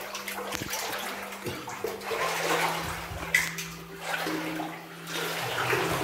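Water splashing and sloshing underfoot as someone wades through shallow water in a mine tunnel, in uneven strokes, with a steady low hum underneath.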